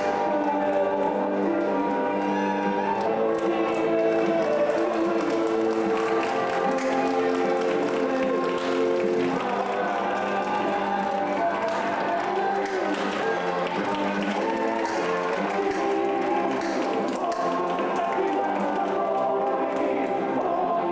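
Ring-entrance music with long held notes, playing steadily.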